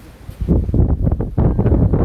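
Wind buffeting the phone's microphone: a loud, ragged low rumble that comes up about half a second in and carries on in uneven gusts.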